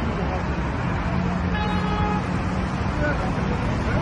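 Busy road traffic with a steady low rumble of passing vehicles. A car horn sounds one steady note for under a second in the middle.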